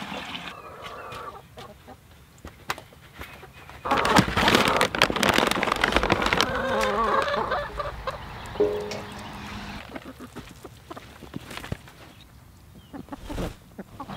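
Chicken layer-feed pellets poured from a plastic bucket: a loud rattling rush about four seconds in, lasting about two seconds. Hens cluck softly around it.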